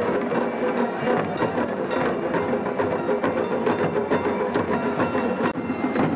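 Traditional Himachali deity-procession band: drums and brass cymbals beaten in a fast, steady beat, under steady held notes from wind instruments.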